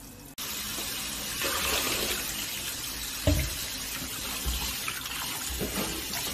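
Kitchen tap running steadily onto parboiled beef brisket in a stainless steel bowl as it is rinsed by hand to wash off the scum from blanching. A single dull knock sounds about three seconds in.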